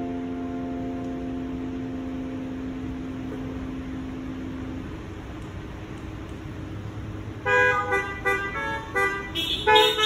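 A final chord on a Kawai digital piano rings out and fades away over the first few seconds. Then, from about seven and a half seconds in, several car horns honk in short, overlapping toots, the drive-in congregation's applause for the music.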